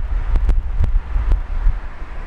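Wind buffeting the microphone from a moving car: a loud, uneven low rumble with several sharp pops, over road noise.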